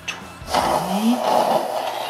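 A person blowing their nose hard into a tissue: one loud, long honking blow starting about half a second in.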